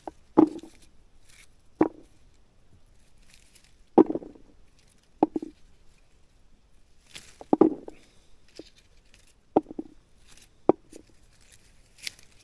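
Clusters of redcurrants being stripped from the bush by hand and dropped into a plastic bucket, landing with about eight soft knocks at irregular intervals of a second or two, with light rustling of the leaves in between.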